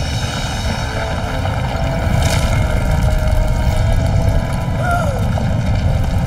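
A loud, steady low rumble, a cartoon sound effect, with a short squeaky rising-and-falling glide near the end.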